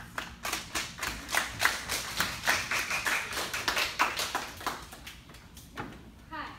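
A small audience applauding, with individual claps distinct, thinning out and dying away about five seconds in.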